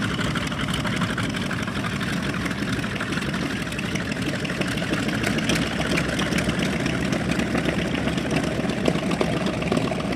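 North American B-25J Mitchell's twin Wright R-2600 radial engines running steadily at idle on the ground, propellers turning.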